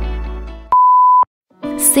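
Background music fading out, then a single loud, steady, high electronic beep about half a second long, cut off sharply and followed by a brief silence before new music begins.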